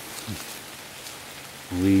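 A steady patter of light rain falling on leaves and foliage. A man's voice starts near the end.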